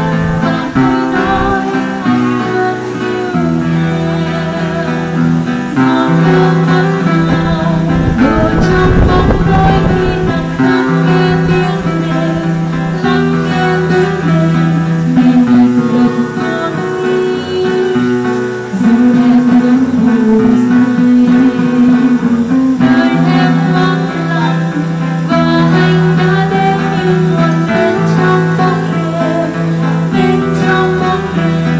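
Two acoustic guitars playing a song while a woman sings into a microphone, amplified through a small speaker cabinet. A brief rumble of noise comes through about eight seconds in.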